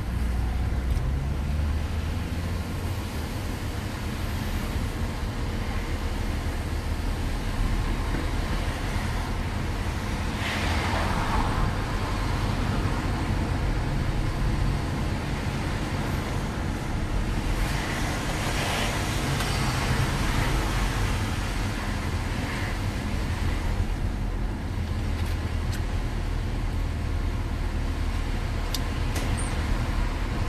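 Car driving, heard from inside the cabin: a steady low engine and tyre drone whose pitch shifts a little. The road noise swells twice, about a third of the way in and again past halfway.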